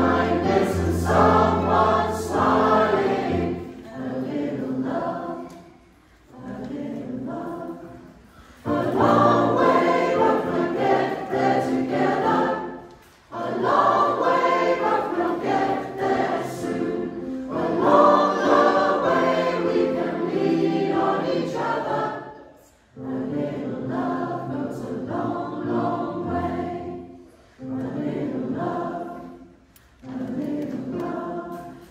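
Mixed community choir of women's and men's voices singing, accompanied on a digital piano. The song comes in phrases with brief dips between them.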